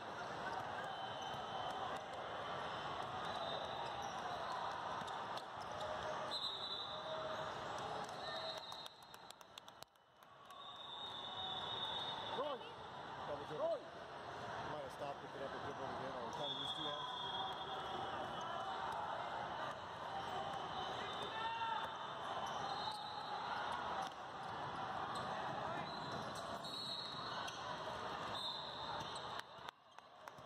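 Youth basketball game sound: a basketball bouncing on the court over a steady hubbub of many voices from players and spectators across a crowded hall.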